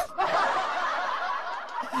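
A song cuts off abruptly, then a man laughs softly under his breath, a breathy snicker.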